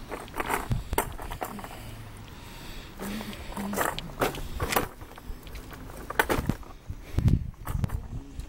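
Black plastic trash bag rustling and crinkling as it is carried, in irregular bursts, with footsteps along the way.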